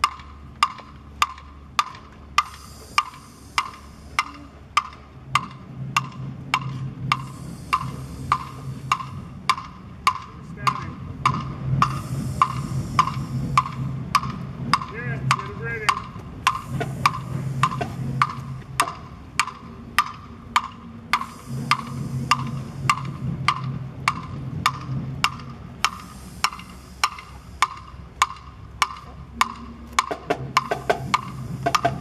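A sharp percussion click, most likely a wood block, taps out a steady marching tempo for a marching band at about two clicks a second. Fainter, low sound comes and goes underneath it in patches.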